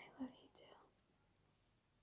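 A woman's brief soft whisper close to the microphone in the first second, with a small mouth click, then near silence.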